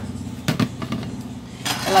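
A kitchen utensil knocking against a dish a couple of times about half a second in, while dessert is being served into a glass bowl, over a steady low hum.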